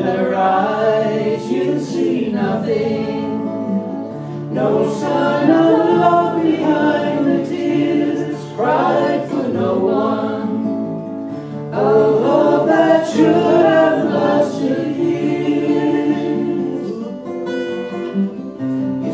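A woman and a man singing a folk song together, accompanied by two acoustic guitars, in phrases with short breaks between lines.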